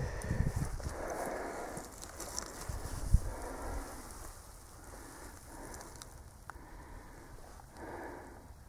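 Wind buffeting the microphone outdoors: low rumbling thumps in the first second or so and one sharper thump about three seconds in, then settling to a faint hiss.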